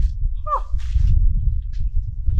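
Wind buffeting the microphone: a loud, uneven low rumble that rises and falls. A man gives a short "huh" about half a second in, followed by a brief breathy hiss.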